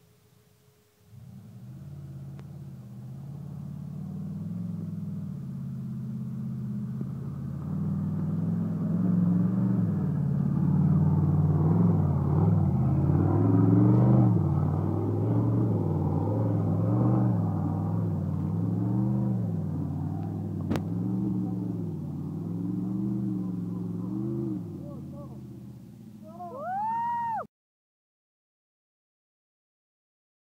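Modified Jeep Wrangler's engine revving hard in repeated surges as it claws up a steep, muddy gully, growing loud as it nears and then easing off. A short rising-and-falling high tone comes near the end, and then the sound cuts off suddenly.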